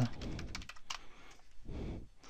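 Computer keyboard typing: a quick, even run of key clicks as a string of digits is entered.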